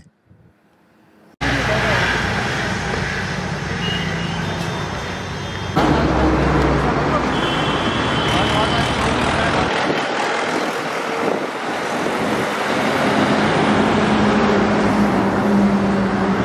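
Roadside outdoor noise: a loud, steady wash of passing road traffic with indistinct voices in the background. It starts abruptly after a brief near-silent moment at the start.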